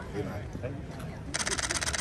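A camera shutter firing a rapid burst of clicks for just under a second, followed by a second, shorter burst.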